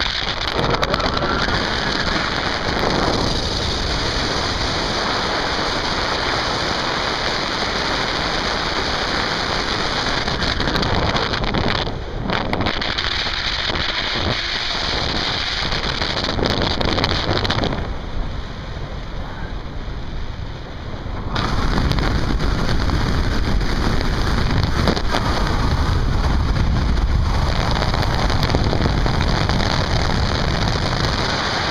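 Wind rushing over the microphone of a camera carried on a paraglider in flight: steady loud noise, easing for a few seconds about two-thirds of the way in, then returning with a heavier rumble.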